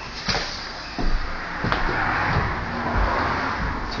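A car passing on a road outside, its tyre and engine noise swelling through the middle and easing near the end. A couple of sharp knocks come in the first second.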